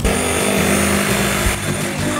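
An electric power tool running steadily and loudly, its motor whine under a dense rasping noise; it starts abruptly and stops near the end.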